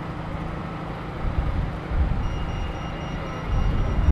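Town-centre street noise: a steady low traffic rumble that swells a few times, with a faint high-pitched beep repeating a few times a second from about halfway through.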